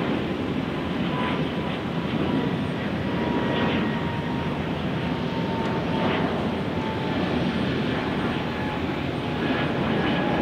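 Airbus A220's twin Pratt & Whitney PW1500G geared turbofans at takeoff thrust as the jet climbs away: a steady, dense engine rumble with a thin whine that slowly falls in pitch.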